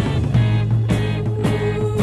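Early-1970s progressive rock band recording playing: a bass line and drum hits under one long held note.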